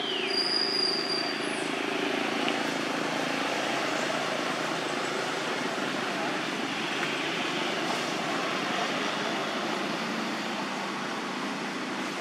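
Steady outdoor background noise with no single clear source, and a short high chirp falling in pitch at the very start.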